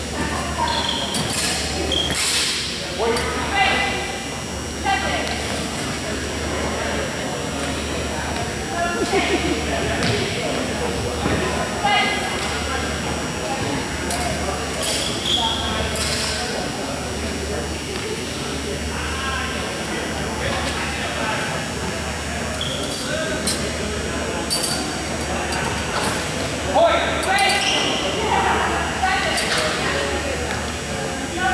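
Voices chattering and echoing in a large gym hall, with scattered sharp metallic clicks and pings: steel longsword blades striking during a sparring bout.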